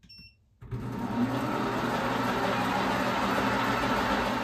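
Precision Matthews PM 1228 bench lathe switched on: about half a second in, the motor and spindle start, spin up, and then run at a steady speed with an aluminum bar turning in the three-jaw chuck. Nothing is being cut yet.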